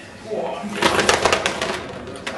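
A batch of ping pong balls clattering down a card sorting chute and dropping into a plastic tub and a card box: a quick run of light, sharp clicks and taps lasting about a second.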